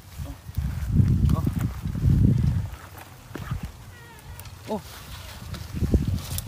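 Two low calls from a farm animal, the first about a second in and the second just after, followed by fainter scattered sounds.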